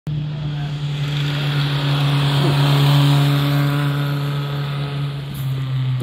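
Vintage racing car engine running hard at steady revs on the hill climb, getting louder toward the middle and then easing slightly in pitch about five seconds in.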